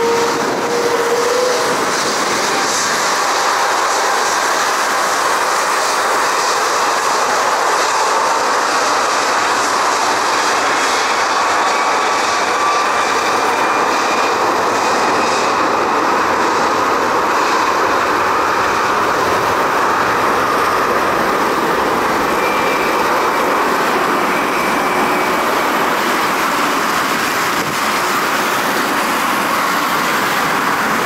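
Garuda Indonesia Airbus A330 jet engines running on a wet runway: a loud, steady roar with a faint whine drifting in pitch now and then.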